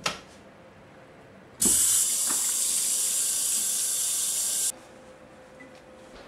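A click, then a steady high hiss that switches on abruptly and cuts off sharply about three seconds later, heard in a small bathroom.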